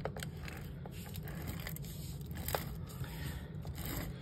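Cardstock being handled and slid across a paper-crafting grid mat as a card layer is placed and pressed down, with soft scraping and a light tap about two and a half seconds in, over a low steady hum.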